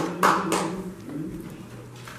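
A few people clapping, the claps about 0.4 s apart, slowing and stopping about half a second in, over a low held voice.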